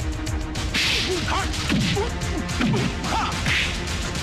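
Film fight sound effects: several punch whooshes and sharp whip-like hit cracks in quick succession.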